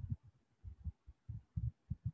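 A run of faint, irregular low thumps, some in pairs, several within two seconds.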